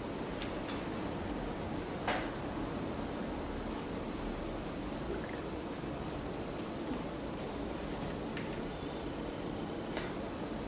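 Quiet indoor background noise with a steady, faint high-pitched whine, broken by a few soft ticks, the clearest about two seconds in.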